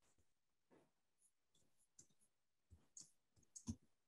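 Near silence, then a handful of faint short clicks in the second half: keys being typed on a computer keyboard.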